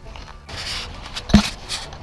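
Handling noise on a body-worn action camera: scraping and rustling, with one sharp knock a little past halfway.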